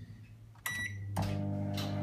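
Microwave oven started from its keypad: a short high beep, then the oven running with a steady low hum. Another short beep comes near the end.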